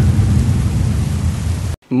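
Rain-and-thunder sound effect: a steady rushing rain noise over a deep rumble, cutting off suddenly just before the end.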